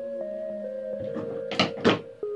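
Calm background music with slow held notes. About a second and a half in come two quick sharp snips, a quarter second apart, as pruning scissors cut serissa bonsai twigs. The snips are the loudest sounds.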